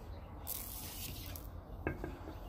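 Handling noise as the phone is moved: a brief rubbing hiss starting about half a second in and lasting about a second, then a single sharp click near the end. A low steady hum runs underneath.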